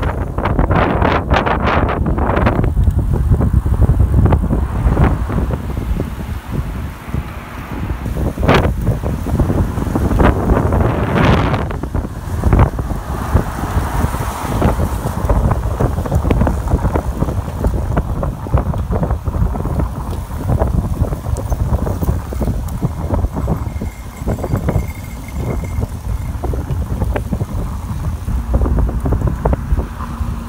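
Wind buffeting the microphone of a camera carried on a moving road bicycle: a loud, low rushing rumble that rises and falls. There are a few sharp knocks in the first couple of seconds and again around eight to thirteen seconds in.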